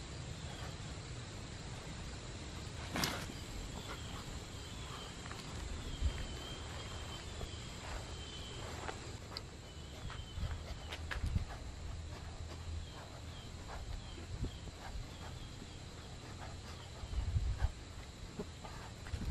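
Outdoor ambience: a steady high insect drone with faint, repeated short chirps. Over it come a sharp click about three seconds in and scattered low thumps and rustles from someone exercising on the grass.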